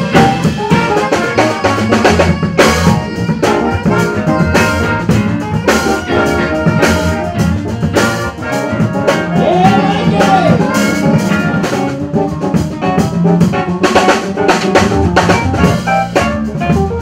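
Live jazz band playing: a drum kit with frequent snare and cymbal hits, electric guitar and saxophone, with a held note that bends up and back down about ten seconds in.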